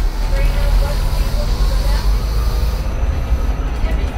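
Inside an electric shuttle bus in motion: a steady low rumble of the bus rolling along the street, with faint voices of other people in the background.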